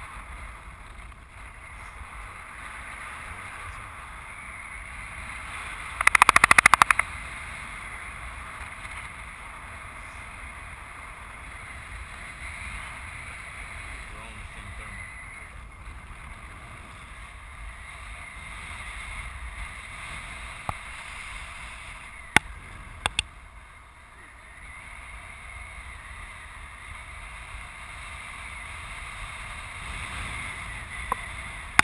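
Steady rush of wind over the camera microphone in flight under a paraglider. A loud crackling burst lasts about a second, about six seconds in, and a few sharp clicks come around twenty-two seconds in.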